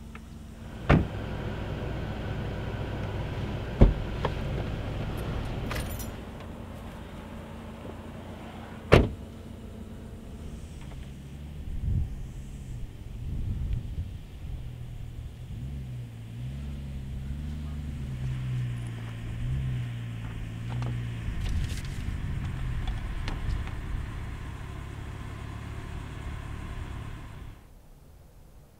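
A car engine running with a low, uneven hum that rises and falls through the middle. Three sharp knocks, like car doors or a trunk lid being shut, cut in about one, four and nine seconds in and are the loudest sounds.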